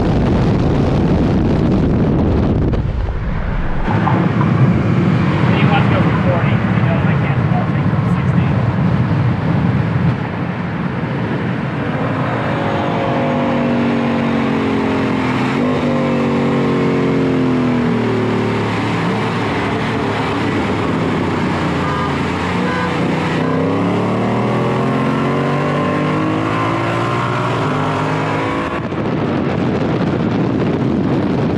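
V8 muscle cars accelerating hard side by side at highway speed in a roll race, heard from inside a car with wind rushing past. The engine note sinks, then climbs steadily through the revs over the last ten seconds.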